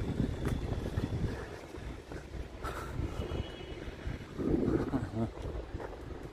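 Wind buffeting the microphone, an uneven low rumble, with a brief voice about four and a half seconds in.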